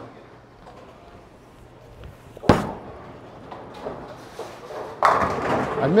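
Storm Sun Storm bowling ball thrown down a lane: one sharp thud as it lands on the lane about two and a half seconds in, a low roll, then a clatter of pins about five seconds in.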